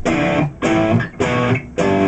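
Electric guitar playing four short strummed chords, about two a second, each cut off quickly: the palm-muted verse riff.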